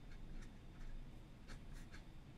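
Fountain pen nib scratching on paper in a few short, faint strokes as a number is written and boxed.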